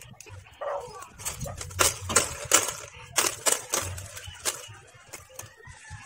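A dog barking several times in quick succession, about two or three barks a second, loudest in the middle of the stretch.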